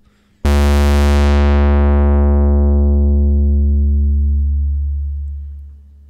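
A 1974 Moog Minimoog playing a single sustained low note while its 24 dB-per-octave ladder low-pass filter is swept closed. The note enters about half a second in, bright and buzzy, then grows steadily darker and dimmer as the high harmonics are carved away, until only a dull low tone remains and fades out near the end.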